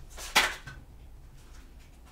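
Tarot cards being shuffled by hand: one short, sharp papery rustle about a third of a second in, then only faint handling.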